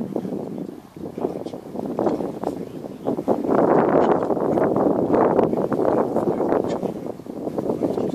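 Wind buffeting the microphone, a rough rumbling noise that swells and is loudest through the middle of the stretch.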